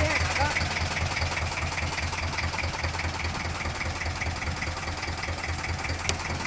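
Fishing boat's engine running at a steady idle, a low, even, rhythmic throb.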